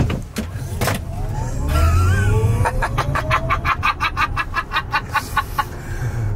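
Tesla Model X P100D accelerating hard, heard inside the cabin: the electric drive motors' whine rises steadily in pitch for about four seconds and then levels off, over tyre and road rumble. Through the second half someone laughs in quick bursts.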